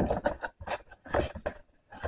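Scissors cutting through the thin cardboard of a cereal box: a few irregular crunching snips and scrapes as the box is turned and handled.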